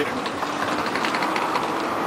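Steady outdoor background noise, an even rushing hiss with a few faint ticks in the first second.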